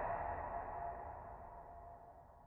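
Long ringing, reverberant tail of a single loud hit, fading steadily and dying away to silence at about two seconds.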